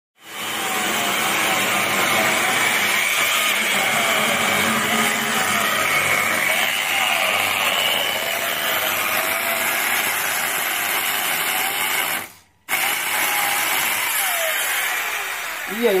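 Electric power tool running steadily while cutting into a large elm root, stopping for about half a second around twelve seconds in.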